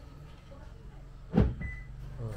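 A single dull knock from the open car boot about a second and a half in, then a short high beep, over a low steady hum.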